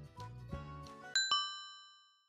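Light background music stops about a second in and gives way to two quick bell-like chime dings, one right after the other, that ring out and fade away.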